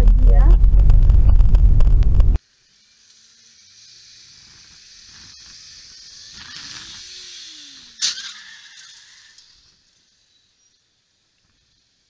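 Loud low road rumble inside a moving car, with voices over it, which cuts off abruptly about two seconds in. A faint hiss with a single sharp click about eight seconds in follows, then silence.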